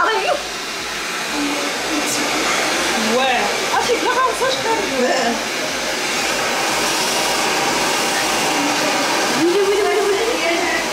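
Hand-held hair dryer running steadily, with voices briefly heard over it about three to five seconds in.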